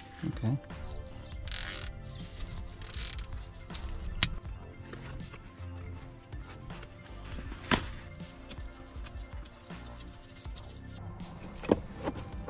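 Background music running quietly under handling noises: rustling of a leather shift boot being worked off and onto a car's gear lever, with two sharp clicks about four and eight seconds in.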